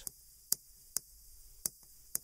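Chalk tapping on a chalkboard during writing strokes: three short, sharp ticks about half a second, one second and a second and a half in.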